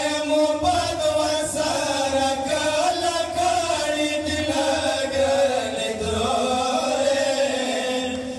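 Male reciters chanting a Pashto noha, a Muharram mourning lament, unaccompanied and amplified through microphones, in long held notes that waver in pitch.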